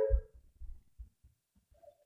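A brief pitched hum from a person's voice at the very start, then a few faint, low knocks in an otherwise quiet pause.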